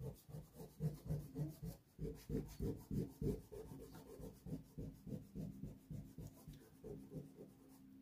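Rubber eraser rubbing back and forth on drawing paper in quick repeated strokes, lifting off pencil underdrawing from an ink sketch.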